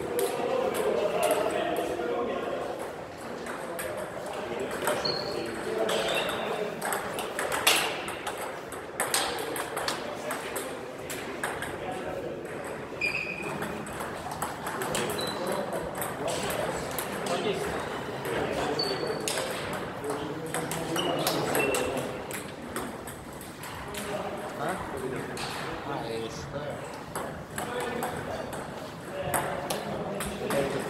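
Table tennis rallies: a celluloid-style ball clicking off the players' bats and bouncing on a Stiga table, in quick irregular knocks, with a few short high squeaks in between. People talk in the background throughout.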